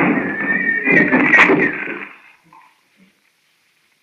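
Radio-drama sound effects of a horse whinnying over a loud, noisy rush, for the horses in a wagon crash. The sound fades out about halfway through.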